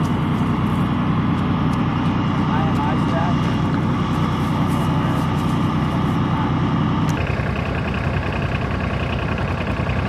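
Diesel engine of an eight-wheeled LAV-25 light armored vehicle running steadily with a deep, even drone. About seven seconds in the sound changes abruptly to a brighter engine sound with a higher whine on top.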